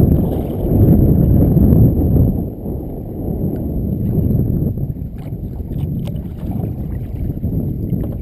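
Wind buffeting the microphone of a camera mounted low on a kayak out on choppy lake water, a rough low rush that is heaviest for the first two seconds or so and then eases. A few faint small splashes or ticks come through in the second half.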